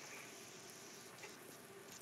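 Faint, steady sizzling of steaks cooking in a grill pan, close to silence.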